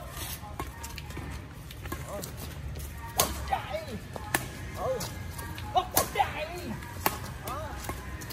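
Badminton rackets striking a shuttlecock in a fast doubles rally: a series of sharp smacks, irregularly spaced about a second or more apart, the loudest a few seconds in.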